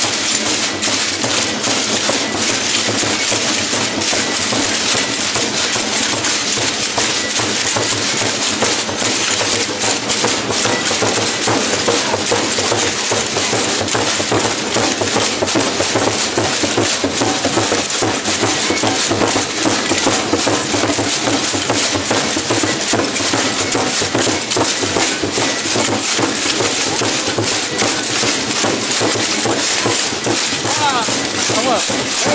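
Procession drum beaten with a stick under a dense, continuous rattling of many dancers' rattles, with no breaks.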